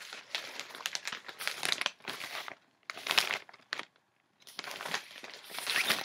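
A packable printed fabric tote bag being unfolded from its pouch and shaken out, its fabric rustling and crinkling in several bursts with short pauses between.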